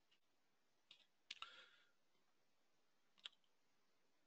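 Near silence broken by a few faint computer mouse clicks: one about a second in, a quick pair just after it, and a single click past the three-second mark.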